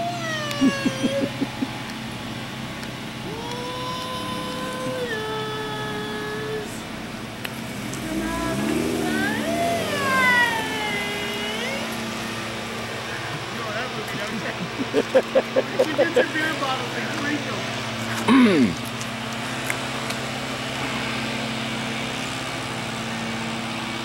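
Indistinct voices at intervals over a steady low hum of vehicle engines and road traffic.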